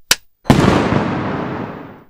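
A short sharp click, then about half a second in a sudden loud blast, like an explosion or firework going off, that fades away over the next second and a half.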